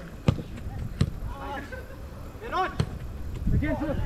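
A soccer ball being kicked on artificial turf: two sharp thuds in the first second and a third near three seconds in, with players' distant shouts between them.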